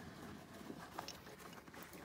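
Faint handling noise with a couple of light ticks as a rope is wrapped around a cow's hind legs.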